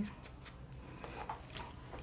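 Faint rustling and a few light handling noises of hands moving a stuffed cloth doll, over a low steady room hum.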